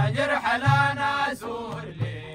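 A group of men chanting a Sudanese madih praise song, accompanied by deep strokes of large frame drums and a small tambourine. The voices are strongest in the first half and ease off while the drum strokes go on.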